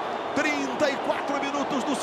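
A man's voice talking over steady stadium crowd noise, in the manner of TV football commentary.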